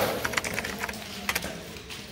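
Computer keyboard typing sound effect: a quick, irregular run of key clicks.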